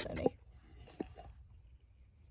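A glass candle jar is lifted out of a molded pulp cardboard crate: faint handling noise with a couple of light clicks about a second in. A brief murmur of voice trails off at the very start.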